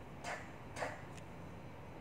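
Three faint, short voiceless 't' sounds, about half a second apart, as the sound of the letter T is softly said.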